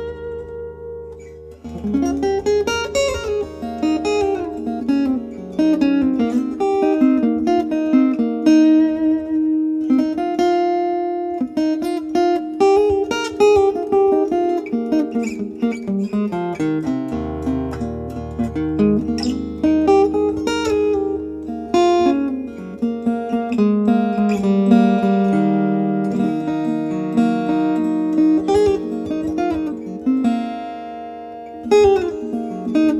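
Background music on acoustic steel-string guitar: a plucked melody with ringing notes over sustained low bass notes, which drop out for a few seconds midway and then return.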